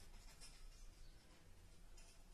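Near silence: room tone, with a faint brief scrape of a felt-tip marker on paper about half a second in.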